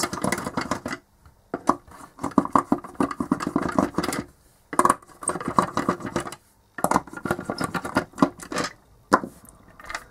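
Screws being turned out of the lid of a plastic enclosure: about four bursts of rapid clicking and scraping, each a second or more long, with short pauses between.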